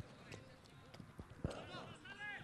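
Faint sounds from a football pitch: a few dull thuds of the ball being kicked, then players calling out across the field near the end.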